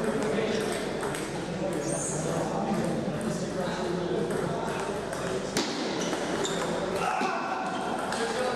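Table tennis ball clicking off bats and the table during a rally, with one sharper hit about five and a half seconds in. A murmur of voices runs in the background.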